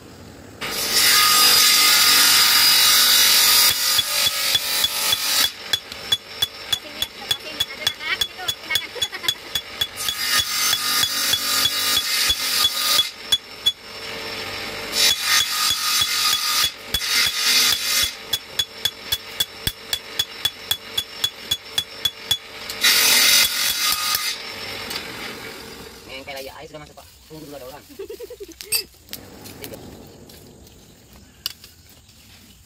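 Blacksmith's forge work on a machete blade. Runs of quick sharp metal strikes, about three to four a second, alternate with three stretches of loud, steady rushing noise.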